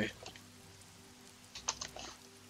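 Computer keyboard keys clicking as a word is typed: a quick run of keystrokes in the second half.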